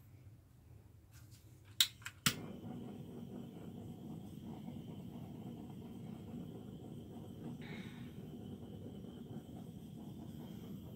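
Handheld torch clicking twice as it is lit about two seconds in, then the steady low rush of its flame as it is played over wet acrylic pour paint.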